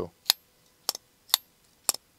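Vosteed Mini Nightshade folding knife being flicked open and closed, its crossbar lock and blade snapping into place: four sharp clicks about half a second apart.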